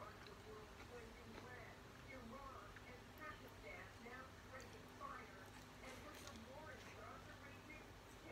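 Quiet sounds of a person eating a sandwich from a glass plate, with a few faint clicks and soft mouth sounds, under faint background voices.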